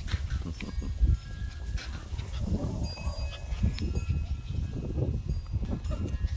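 Miniature Australian Shepherd puppies giving short, high whines and yips as they play, over a low rumble of wind or handling noise on the microphone.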